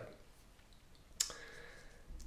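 A single sharp click a little past a second in, against faint room tone.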